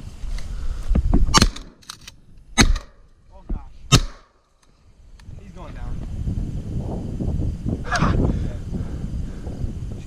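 Three shotgun shots in quick succession, about a second and a quarter apart, then wind rumbling on the microphone.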